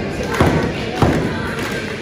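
Two sharp thuds in a wrestling ring, about half a second apart, from the wrestlers' strikes and bodies hitting each other and the ring.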